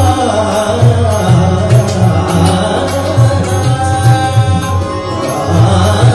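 Live Hindustani devotional bhajan: a voice sings gliding, ornamented lines over a held harmonium accompaniment, with the tabla keeping a steady rhythm of low bass strokes.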